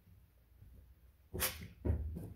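A dog giving a short, sharp puff of breath through the nose about a second and a half in, then a second, lower and duller one just before the end, after a quiet stretch.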